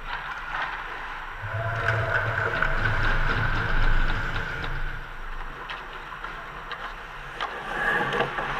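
Ice hockey play on a rink: skates scraping and carving the ice, with scattered sharp clicks of sticks and puck. A low hum swells in the middle and fades again.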